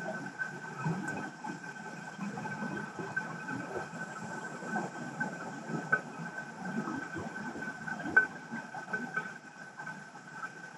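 Underwater ambient noise recorded on the seabed through a camera housing: a steady low rumble with a constant high tone over it and scattered small clicks and ticks.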